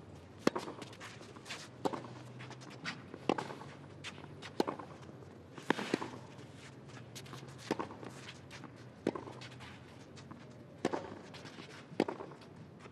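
Tennis rally on a clay court: racket strings striking the ball about every one and a half seconds, each hit a sharp pop, with softer ticks in between.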